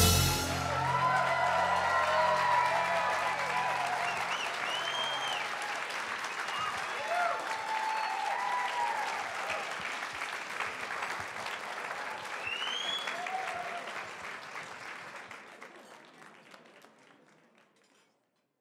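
Audience applauding and cheering, with whoops rising above the clapping, as the band's last low notes die away over the first few seconds. The applause fades out steadily near the end.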